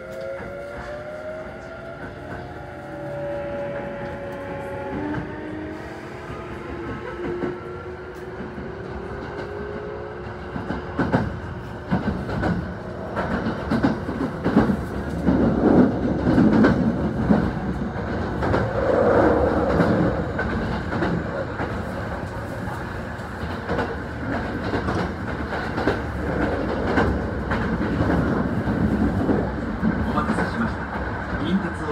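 Kintetsu electric train pulling away and picking up speed. For the first ten seconds or so its traction motors whine in several tones that climb in pitch together. After that the wheels rumble and clatter over the rail joints as it runs at speed.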